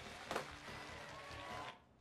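Soft, steady hiss of background ambience with a few faint steady tones and a single click about a third of a second in; it cuts off suddenly near the end.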